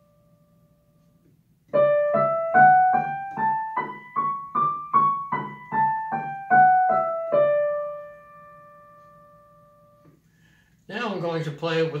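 Digital piano playing a D major scale one octave up and back down in single notes, about two and a half notes a second. The last D is held and left to fade.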